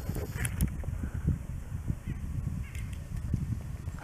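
Wind buffeting the microphone: an uneven low rumble that rises and falls in gusts, with a couple of faint clicks about half a second in.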